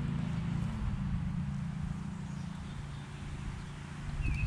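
Steady low engine hum over outdoor background noise, a little fainter after the first second.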